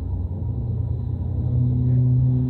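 Low rumble of a moving vehicle heard from inside its cabin, with a steady low hum that grows stronger over the second half.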